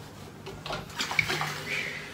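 Steam iron hissing and spluttering in short irregular bursts, starting about half a second in, as it is lifted and pressed onto the shorts.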